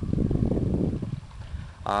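Wind buffeting the camcorder microphone: a low, uneven rumble that rises and falls. A man's voice starts right at the end.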